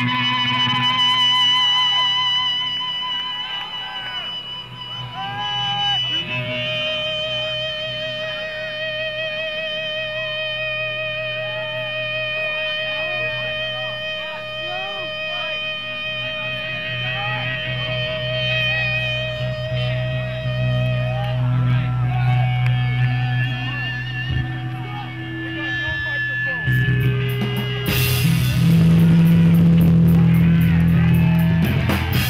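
Electric guitar amplifiers feeding back in long, slightly wavering tones over a steady low amp hum, with crowd chatter underneath. Near the end, the hardcore punk band comes in loudly at full volume.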